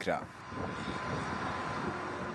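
Steady drone of deck machinery on a bulk carrier as its deck cranes work grab buckets during cargo unloading, with a faint steady whine above the drone.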